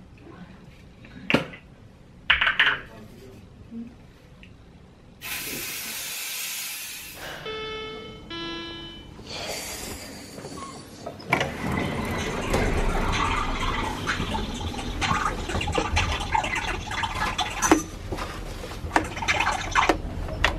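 An aerosol hairspray can sprays: one steady hiss of about two seconds, about five seconds in. Later the sound gives way to a louder, busy indoor background of many voices and small knocks.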